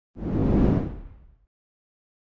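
A whoosh sound effect for an animated logo transition: one deep swell that rises quickly just after the start, peaks about half a second in, and fades away by about a second and a half.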